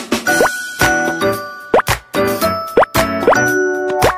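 Bright, playful music jingle with four quick rising 'bloop' pop sound effects over it: a like-and-subscribe button animation stinger.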